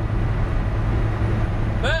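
Steady low drone of a Volvo 780 semi truck's Cummins ISX diesel engine and road noise, heard inside the cab while cruising at highway speed.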